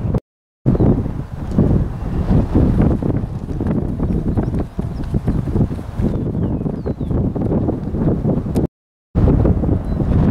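Wind buffeting the microphone, a loud gusty rumble with irregular thumps. The sound cuts out to silence twice, briefly: just after the start and about a second before the end.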